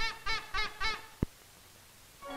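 Cartoon horn sound effect: a quick run of short honking notes, about three a second, each bending up and then down in pitch. It stops after about a second, followed by a single sharp click and then near silence.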